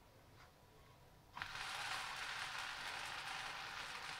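Kefir crepe batter sizzling as it is ladled into a hot, ungreased non-stick frying pan: a steady hiss that starts suddenly about a second and a half in, after near silence.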